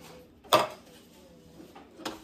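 A single sharp knock about half a second in, like a hard object being set down or snapped shut, with faint room sound otherwise.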